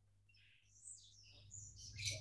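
Near silence: a faint steady low hum with a few faint, short high-pitched chirps.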